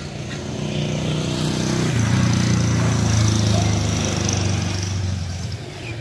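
An engine passes by: its low running note swells over the first two seconds, is loudest around the middle, and fades away near the end.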